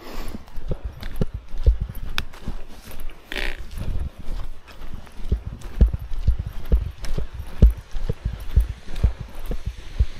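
Footsteps of a hiker walking in hiking shoes on a dirt trail strewn with dry leaves: a steady run of low thuds with small crunching clicks, about two steps a second in the second half.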